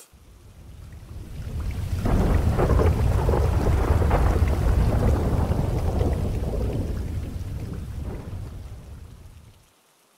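Rolling thunder over rain, a deep rumble that swells in over about two seconds, holds, and fades away shortly before the end.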